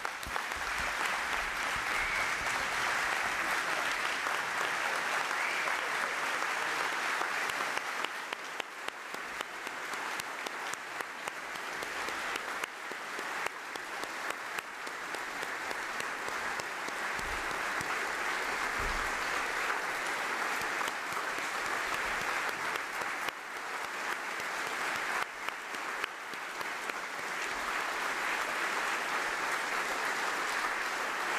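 Large standing audience applauding: sustained, dense clapping that eases a little about a third of the way through and then builds back up.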